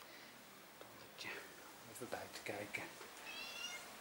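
A domestic cat meowing faintly, ending in one short, high-pitched meow shortly before the end.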